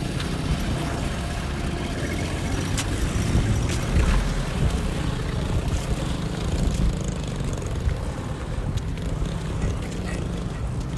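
Steady outdoor street noise dominated by an uneven low rumble, with a few faint clicks.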